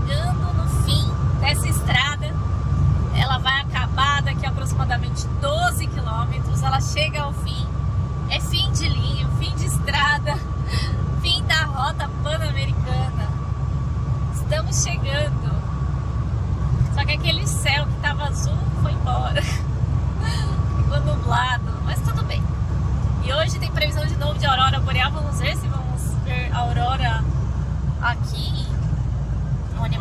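Inside a motorhome's cab while driving: steady low engine and road rumble, with people's voices coming and going over it. A thin steady whine runs under it and stops near the end.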